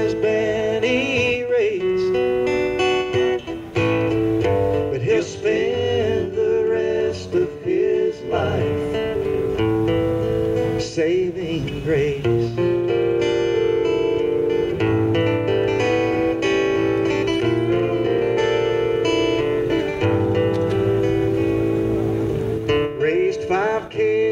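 Several acoustic guitars playing a slow country song live, an instrumental stretch between sung verses.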